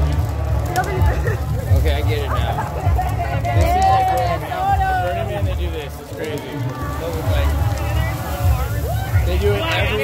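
Crowd voices and scattered shouts in the street, with no clear words, over a steady low rumble from a large street fire burning close by.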